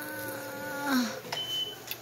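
A person's voice holding one long, steady, hummed note that drops in pitch and breaks off about halfway through, followed by a short high electronic beep.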